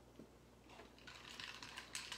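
Faint, quick clinking of ice and a glass straw against a glass tumbler as the drink is stirred; the clicks start a little before halfway and grow busier.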